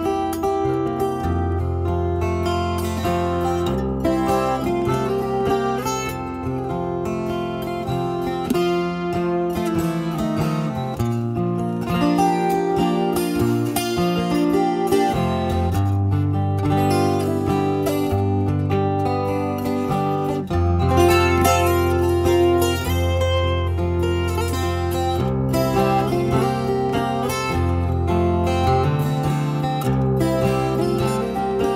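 Twelve-string acoustic guitar played solo in Hawaiian slack key style: an instrumental introduction, a picked melody over held bass notes that change every second or two.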